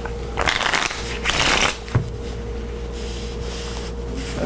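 A deck of playing cards being shuffled by hand in two quick rustling bursts over the first two seconds, ending in a sharp tap, then only a faint steady hum.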